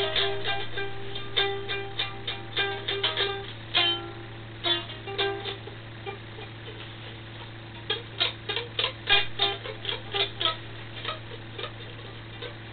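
Music of plucked-string notes in quick runs, thinning out for a couple of seconds in the middle and picking up again, over a steady low hum.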